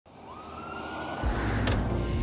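City traffic noise fading in, with an ambulance siren tone rising and then holding for about a second. A deep, pulsing music bass comes in about a second in, with a short sharp hit near the end.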